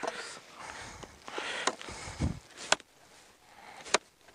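Crunching steps in snow, then sharp knocks as an ice probe is jabbed into the lake ice, the clearest two about a second apart near the end. The probe breaks through on the second strike, a sign of thin, unsafe ice.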